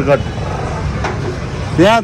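Street traffic: a steady low rumble of motor scooters and motorbikes running through a junction. A man's voice is briefly heard at the start and again near the end.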